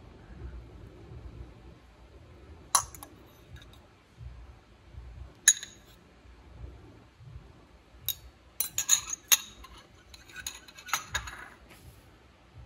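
A metal fork clinking against a ceramic bowl and a metal broiler pan as butter pats are lifted and set down. There are single sharp clinks about three and five and a half seconds in, then a quick run of clinks in the last few seconds.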